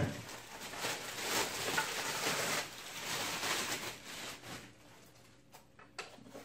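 Clear plastic bag crinkling and rustling as it is pulled off a power tool, for about four seconds, then dying down to faint handling sounds.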